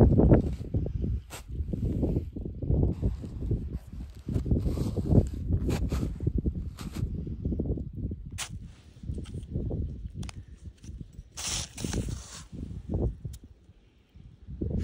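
A boot in a snowboard binding being handled on snow: low irregular rumbling with a few sharp plastic clicks, and a brief hissing scrape near the end.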